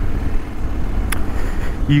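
A 2020 Honda Africa Twin's 1,084 cc parallel-twin running steadily while the bike cruises, heard under a low rumble of wind on the microphone. A brief click sounds about a second in.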